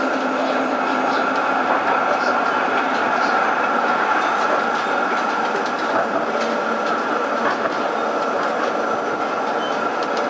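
Melbourne tram running along its street track, a steady rolling noise of steel wheels on rail with a steady high hum over it.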